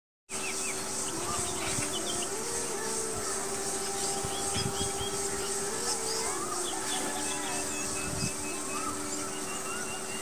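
Outdoor nature ambience: birds chirp and call in short bursts over a steady, high insect drone. Underneath runs a soft, slow melody of long held notes that step between a few pitches.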